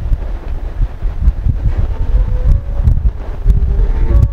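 Loud, uneven low rumble of wind-like noise on the microphone, with a few faint ticks. From about halfway in, faint short held musical tones come in.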